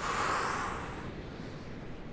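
A person's forceful exhale as he pushes up on the last repetition of a side-plank push-up: a breathy rush that starts suddenly and fades over about a second. Steady surf noise runs underneath.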